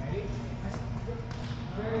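Soccer balls kicked and bouncing on a hard gym floor, two thumps in the middle, over children's voices.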